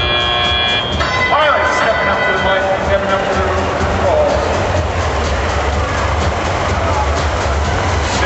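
Loud, steady arena ambience: music over the PA system with a crowd's voices and a low rumble. A steady multi-tone sound in the first second stops suddenly.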